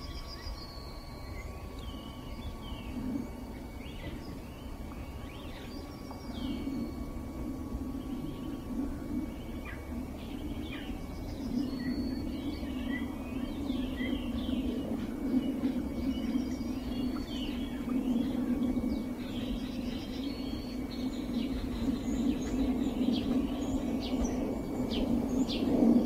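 Many birds chirping and singing in quick, overlapping calls, over a low steady rumble that grows louder from about halfway through.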